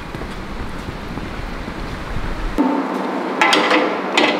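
Wind rumbling on the microphone outdoors, a low steady buffeting. It cuts off abruptly about two and a half seconds in, giving way to a steadier indoor sound with a held tone and a brief hiss near the end.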